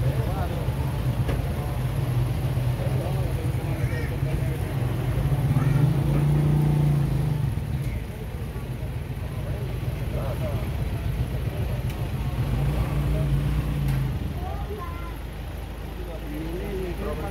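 A motor vehicle engine running with a steady low hum that swells twice, about five seconds in and again near thirteen seconds, with faint voices behind it.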